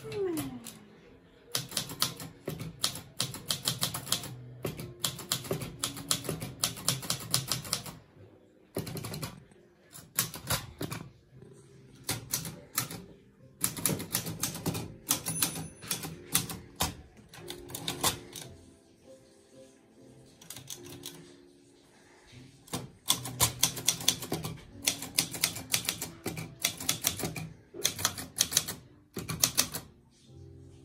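Portable manual typewriter being typed on: runs of rapid key strikes separated by several short pauses, over soft background jazz music.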